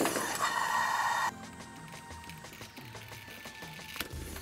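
Compressed air hissing steadily from the air compressor's line; it cuts off abruptly about a second in. Faint background music follows.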